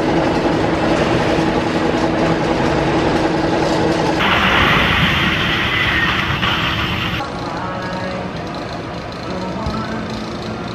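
Wooden roller coaster train (Philadelphia Toboggan Coasters) rumbling and clattering along its wooden track. A brighter, rushing sound cuts in abruptly about four seconds in and stops just as abruptly about three seconds later.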